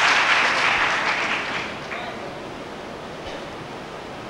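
Audience applause dying away over the first two seconds into quiet room noise.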